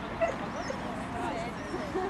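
A small dog giving short, high barks, over a murmur of voices.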